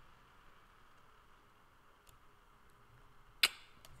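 Faint steady room hiss, then a single sharp computer-mouse click about three and a half seconds in, followed by a couple of lighter ticks.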